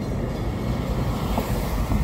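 Wind buffeting the microphone in a steady low rumble, with a 2017 Chevrolet Impala driving up and passing close by near the end.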